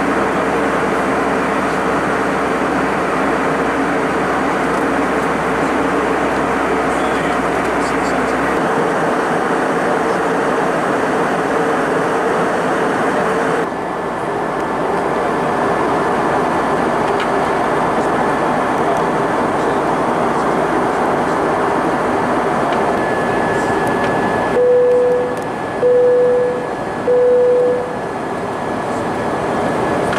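Steady cabin noise of an Airbus A320 during descent: the rush of air and the hum of its CFM56-5A1 engines, heard from a window seat over the wing. Near the end come three short, identical steady tones about a second apart.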